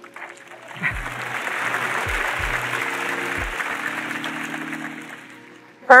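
Conference audience applauding and laughing: the clapping swells about a second in, holds, and fades out near the end, over steady background music.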